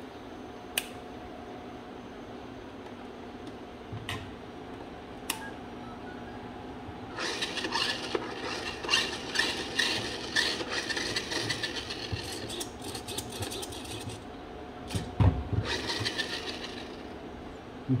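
A toy car's small electric drive motor and plastic gearbox whirring as the wheels spin in the air under radio control, starting about seven seconds in and running for several seconds. A few sharp clicks come before it, and low knocks of the plastic body being handled after it.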